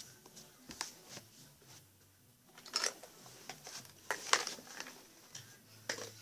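Faint handling sounds as a toy baby bottle and doll are handled: soft rustling and a few light clicks and taps, the loudest about four seconds in.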